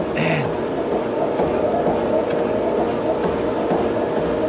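Motorized treadmill running at speed and incline, its belt and motor making a steady mechanical noise under a man's repeated footfalls. There is a brief vocal sound just after the start.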